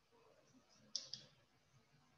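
Chalk tapping against a blackboard while writing: two quick, sharp clicks about a second in, otherwise near silence.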